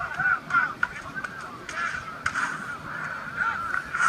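Rubber shoe soles squeaking over and over on a court floor during play, in short chirps and squeals, with a few sharp thumps among them.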